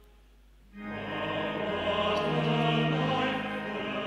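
Choral church music: after a brief hush, a choir comes in about a second in, singing held chords over bass notes that step from one pitch to the next.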